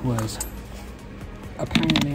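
A man's voice in two brief, unclear utterances, near the start and near the end, over steady workshop background noise.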